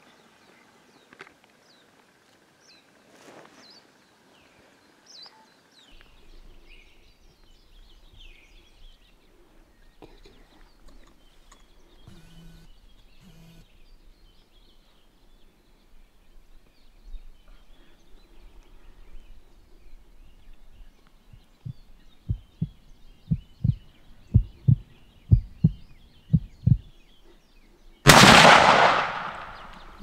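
A single scoped hunting rifle shot about two seconds before the end, loud and sudden, with a long fading echo. Before it there are faint birds chirping and a quick run of low thumps.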